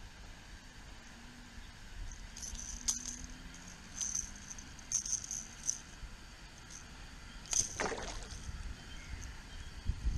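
A hooked golden perch splashing beside a kayak while held in metal lip grips, with light metallic clinks of the grip and lure in the middle of the clip. A louder splash comes near the end as the fish is lifted from the water.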